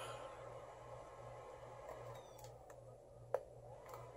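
Near-quiet room with a faint steady low hum and a single sharp click a little over three seconds in: a button press on a laptop being hard-reset.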